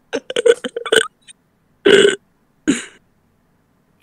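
Short vocal noises from a person over a voice call, not words: a quick run of short sounds in the first second, then two separate short bursts about a second apart.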